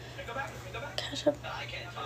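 A woman speaking softly, just a few words, over a steady low hum.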